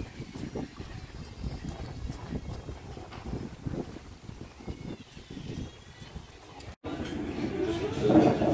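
Wind buffeting the phone's microphone outdoors, an uneven low rumble in gusts. Near the end it cuts abruptly to the busier murmur of a restaurant room.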